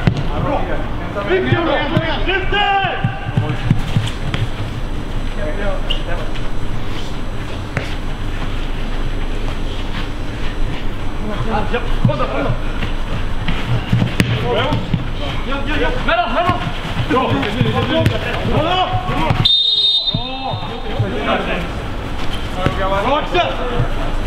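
Players' distant shouts and calls across a football pitch, too faint to make out, with scattered thuds of the ball being kicked.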